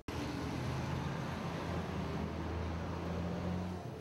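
City street traffic: a steady wash of cars, buses and motorcycles running, with a low engine hum.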